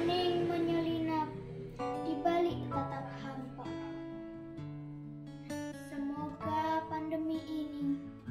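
A child singing a slow, wavering melody over instrumental accompaniment, as a sung poem; the voice is heard in the first second and again in the last second or so, with the accompaniment's held notes carrying on between.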